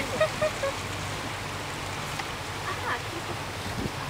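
Tour boat's motor running at a steady low hum as the boat moves along a canal, with brief snatches of voices.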